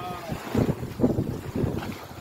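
Wind buffeting an outdoor microphone in irregular gusts, with a drawn-out hesitant "uh" from a man's voice trailing off at the very start.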